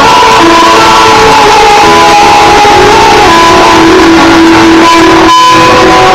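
Live acoustic guitar music from a seated performer at a microphone, with held melodic notes, recorded very loud with a camera's microphone. The sound briefly thins about five seconds in, then the playing carries on.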